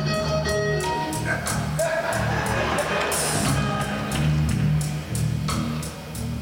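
Live electric blues band playing: electric guitar lead lines with held and bent notes over drums and a low bass line. The cymbal beat is steady, several strokes a second.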